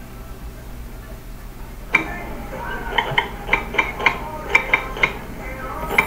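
A run of short, light ringing clinks, a couple a second, beginning about two seconds in after a quiet start.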